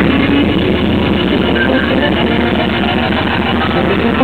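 Live rock band playing an instrumental passage led by electric guitar over bass and drums, with a dense run of rapid notes.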